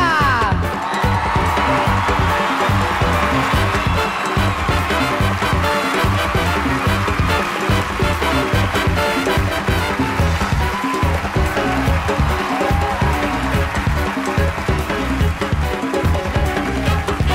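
Upbeat stage-band music with a steady drum beat, opening with a short falling slide in pitch.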